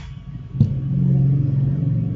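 Outro sound effect: a sudden low hit about half a second in, followed by a steady, low rumbling drone.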